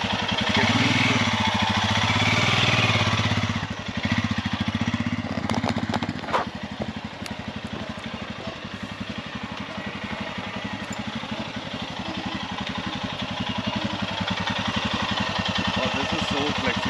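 Royal Enfield Himalayan's single-cylinder engine riding a slow loop. The steady beat is loudest for the first few seconds, drops back as the bike moves away, and grows louder again near the end as it returns. A few sharp knocks come around the sixth second.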